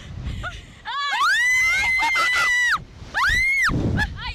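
Slingshot ride riders screaming: one long, high, steady scream held for nearly two seconds from about a second in, then a shorter scream that rises and falls near the end.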